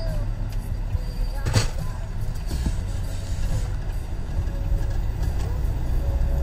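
Steady low road and engine rumble inside a moving car's cabin, with a single sharp knock about a second and a half in. Faint music plays over it.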